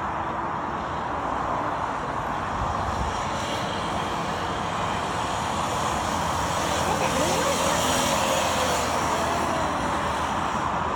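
Small go-kart engine running as the kart laps the track, getting louder about seven seconds in as it comes closer, its pitch rising and falling.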